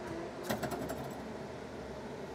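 Lift Hero CPD30 lithium-ion electric forklift: a steady motor whine that cuts off just after the start, then a short metallic rattle of rapid clicks about half a second in as the mast and forks come to rest.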